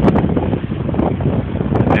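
Wind buffeting the microphone, with a low rumble of road traffic passing.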